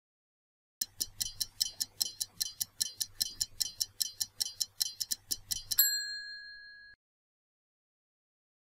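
Stopwatch ticking sound effect, about five quick ticks a second for about five seconds, ending in a single bell ding that rings for about a second and then cuts off: the quiz timer's signal that time is up.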